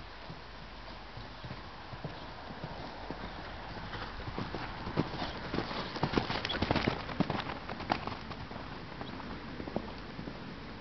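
Horse's hoofbeats on sand arena footing, getting louder as the horse comes close about five to eight seconds in, then fading as it moves away.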